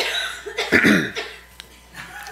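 A man coughing, a short bout with the loudest cough just under a second in.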